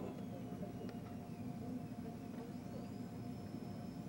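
Steady low hum with a faint constant tone: background room and recording hum, with one faint tick about a second in.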